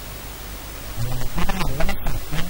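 Steady hiss for about a second, then a man starts speaking into microphones.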